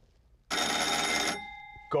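Bell of a 1920s passenger-to-chauffeur signalling device ringing in one rapid burst of almost a second, then a tone hanging on briefly as it fades. The ring alerts the driver that a new command has been sent from the back seat.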